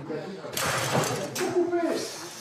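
Table football game: two sharp clacks of the hard ball being struck, about a second apart, with a man's voice briefly near the end.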